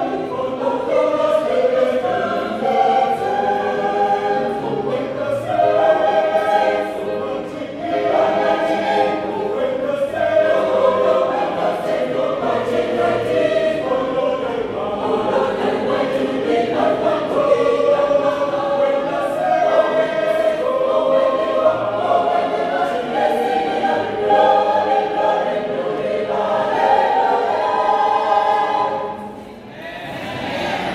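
Choir singing a gospel song in several-part harmony, fading near the end.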